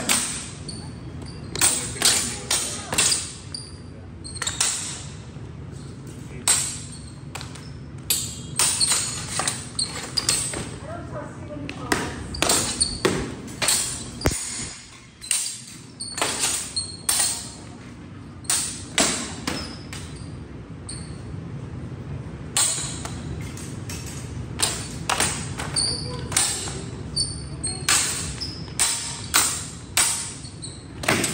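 Steel practice longswords clashing again and again in sparring: irregular sharp metallic clanks, often two or three in quick succession, some leaving a brief ring, with a few short gaps between exchanges.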